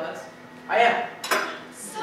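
Metal tableware clattering and clinking: a loud rattle a little under a second in, then a sharp clink just after.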